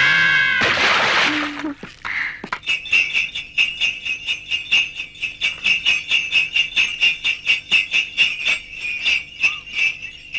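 A man's high sung note and a short noisy burst open it; then, from about three seconds in, small jingle bells ring in a steady rhythm of about four shakes a second.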